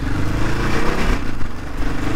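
1991 Suzuki DR650's 644cc single-cylinder engine running steadily as the bike rides at low speed, with wind noise on the microphone.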